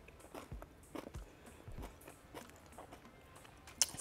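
A person chewing a bite of a crisp-grilled cheese burrito: faint, irregular crunches and mouth sounds.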